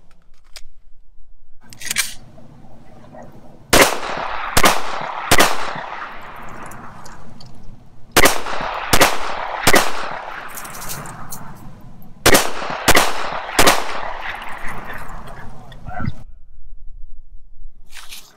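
FN 509 9mm semi-automatic pistol fired nine times in three strings of three shots, about three-quarters of a second apart within each string and a few seconds between strings, each shot followed by a short echo. The tempo is deliberate and slow, which the shooter puts down to having to concentrate on his sights and the pistol's stagy, inconsistent trigger.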